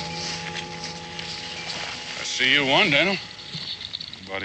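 Background score fading out, then about two and a half seconds in a man's voice, brief and loud, wavering up and down in pitch.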